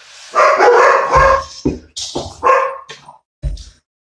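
Pet dogs barking: a long burst of barking followed by several shorter barks.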